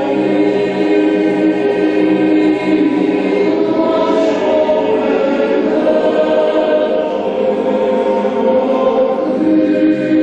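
Boys' choir singing a sacred piece in several parts, with long held chords that shift every few seconds.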